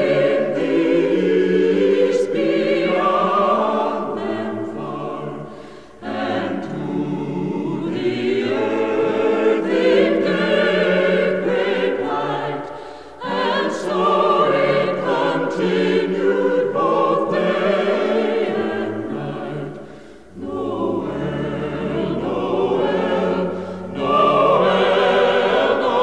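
A choir singing a Christmas carol in held harmony. It comes in phrases of about seven seconds, with short dips for breath about six, thirteen and twenty seconds in.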